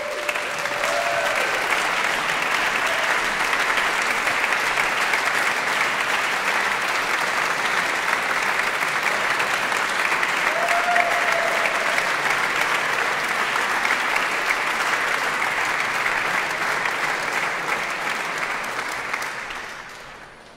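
Audience applauding steadily in a concert hall after a prize is announced, fading out near the end. A couple of brief voices are heard over the clapping.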